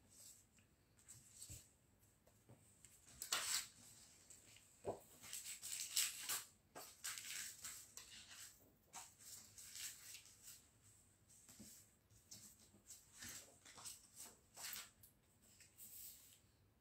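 Faint, scattered rustling and light clicks of paper and card being handled, coming in small clusters with the busiest stretch around the middle.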